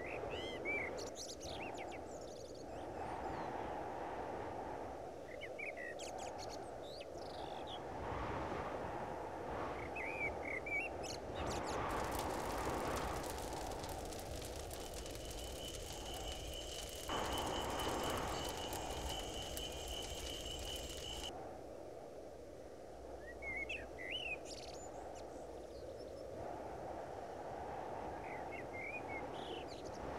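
Outdoor nature ambience: birds chirping briefly every few seconds over a low steady background noise. Midway, a denser stretch of noise with a steady high-pitched tone runs for several seconds, then cuts off.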